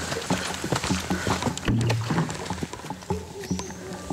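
Background music under the sound of a man climbing a steep forest trail with heavy water jugs: irregular footsteps crunching on dry leaves and stones, with hard breathing.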